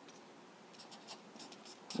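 Felt-tip permanent marker drawing on paper: a faint series of short strokes, most of them in the second half.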